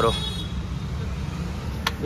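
A steady low rumble in the background, with one sharp click near the end as a plastic side panel is pressed into place on a motorcycle.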